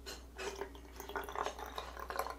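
Water poured in a thin stream from a glass carafe into the narrow neck of a plastic squeeze bottle, a faint, uneven trickle and drip as the bottle fills.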